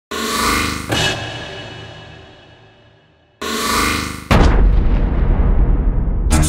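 Cinematic intro sound effects: a sound swells for about a second, ends in a hit and dies away to near silence over the next two seconds. About three and a half seconds in, a second swell starts and about a second later breaks into a loud, deep, sustained rumble.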